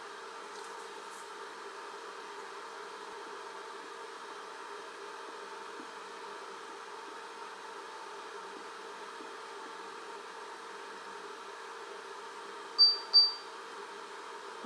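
Steady background hum and hiss, with two short, high electronic beeps about half a second apart near the end.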